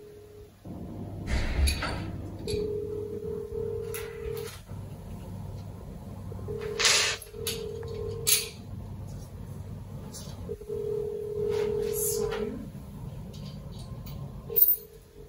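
A steady electronic tone sounds for about two seconds at a time with two-second gaps, repeating over a low hum. Now and then come light clicks and clinks as a metal knob is fitted by hand to a glass pot lid.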